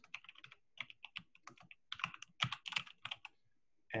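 Typing on a computer keyboard: a quick run of key clicks as a short phrase is typed out, stopping a little after three seconds in.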